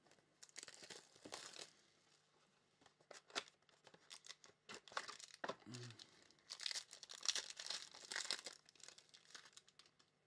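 Trading card packaging being torn open and crinkled by hand, in bursts of rustling with small clicks and taps of handling, busiest in the first couple of seconds and again past the middle.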